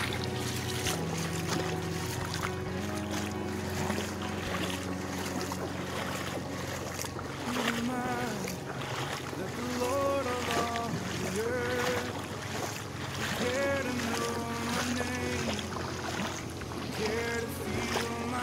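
Motorized banca engine running as a steady drone, its pitch shifting a few times, with water splashing. Voices call out in the background from about halfway.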